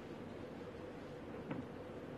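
Quiet room tone of a large hall with a steady low hum, and one brief click about one and a half seconds in.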